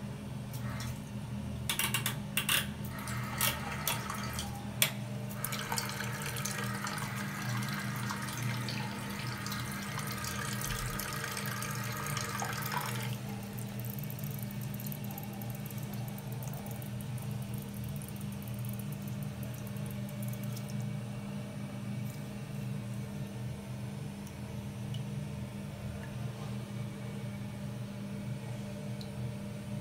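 1980s Armitage Shanks Kensington low-level toilet cistern refilling through its fill valve, water rushing in with a steady hiss. The rush cuts off suddenly about 13 seconds in, leaving a thinner high hiss that stops about 21 seconds in. A few clicks and knocks come in the first seconds.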